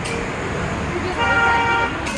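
A vehicle horn honks once, a steady tone lasting under a second, about a second in, over street noise.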